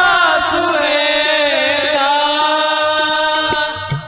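Sikh kirtan: a singer holds a long, wavering sung note without words over a harmonium drone. The note settles into a steady pitch about halfway through, and there are a few light drum strokes underneath.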